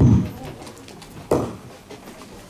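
A man's voice trailing off on a low note that glides down in pitch, then a short sharp noise about halfway through.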